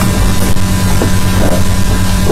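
A loud, steady low electrical hum under a hiss of background noise.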